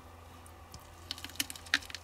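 Navel orange being twisted apart by hand along a cut around its middle: faint crackling and squishing of peel and juicy pulp tearing, growing busier about a second in.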